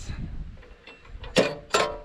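Metal hardware on a lawn tractor's front-mounted fence-wire winder being handled: light ticks, then two sharp clicks about a third of a second apart, past the middle.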